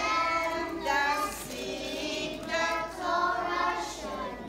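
A group of young children singing a song together in short sung phrases.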